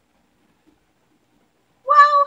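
Near silence, then a woman's voice saying a drawn-out, high-pitched "Well" right at the end.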